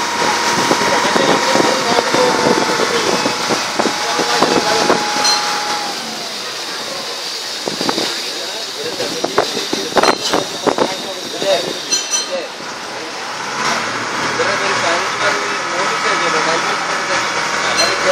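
A boat engine running steadily under way, with indistinct voices over it.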